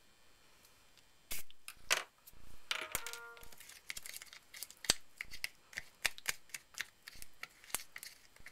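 A spray bottle gives one short spritz of water about a second in, then a small plastic tester spoon scrapes and clicks irregularly against a small plastic cup as a thick paste of salt, flour and water is stirred.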